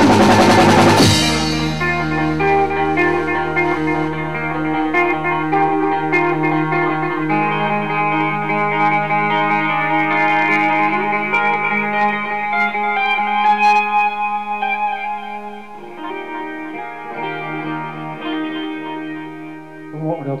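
The full band's loud playing stops about a second in, leaving an electric guitar ringing on through distortion and effects: a layered drone of held notes that shift in pitch now and then. It thins and drops in level in the last few seconds.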